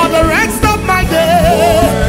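Live gospel worship song: a lead voice sings with vibrato and sliding pitch over a band with keyboard and a steady beat.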